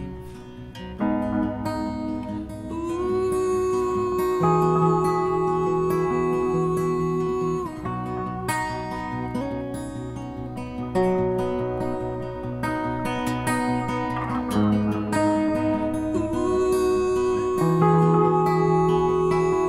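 Acoustic guitar strummed through an instrumental passage of a folk song, under long held notes that slide up in pitch about three seconds in and again near the end.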